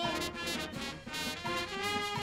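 Brass band playing live: trumpets and saxophones carrying the tune over sousaphone bass and a drum kit keeping a steady beat.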